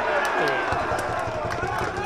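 Football pitch ambience: faint, distant voices of players calling out over a steady outdoor background hiss, with a few faint clicks.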